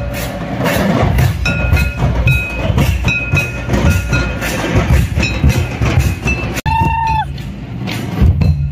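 Santal tamak kettle drums and madal drums beating a festival dance rhythm, with short, held high piping notes over the drumming. About two-thirds of the way through the sound cuts out for an instant, a brief high note sags in pitch, and the drumming picks up again.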